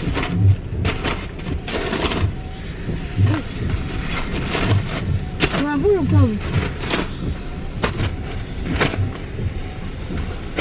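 Balloons and bags rustling and bumping as they are handled inside a car, a string of short knocks and crinkles. A brief gliding voice, like an 'ooh', comes about halfway through.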